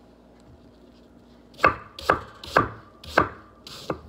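Chef's knife chopping a peeled apple on a wooden cutting board: a run of sharp knocks of the blade meeting the board, about two a second, starting about a second and a half in.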